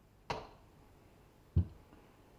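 Two short knocks of small objects being handled on a workbench: a sharp click about a third of a second in, then a lower, louder knock about a second and a half in.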